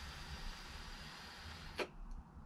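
A long drag drawn through an electronic hookah stick: a faint, steady breathy hiss of air pulled through the device, ending with a short sharp click near the end.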